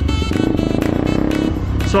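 KTM Duke 200's single-cylinder engine running under way, its pitch rising and then easing off about a second and a half in. Background music with a steady beat plays over it.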